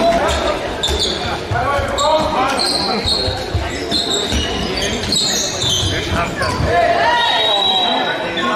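A handball thudding repeatedly on the sports-hall floor, with short high squeaks of shoes on the court and players' shouts, all echoing in the large hall.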